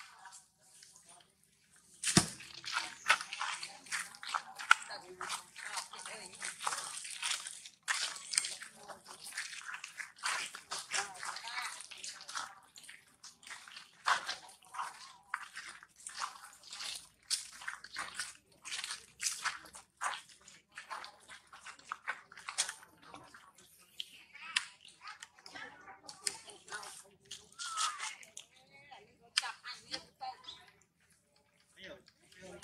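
Dense crackling and rustling of dry leaf litter and gravel as macaques move about on the ground, starting about two seconds in and coming in irregular clusters.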